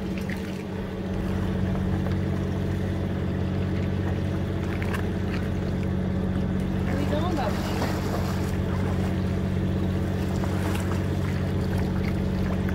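A fishing boat's engine running steadily, a low even hum, with water washing along the hull.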